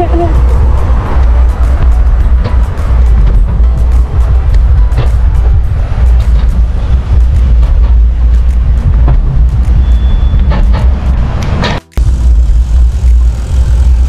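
Wind buffeting the microphone of a handlebar-mounted camera on a moving bicycle, a heavy steady rumble, with frequent small clicks and rattles as the bike rolls over the path. The sound cuts out for a moment near the end.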